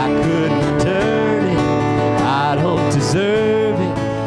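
A live worship band playing a song together: strummed acoustic guitar, electric guitar, keyboard and cajon, with a gliding melody line over a steady chordal backing.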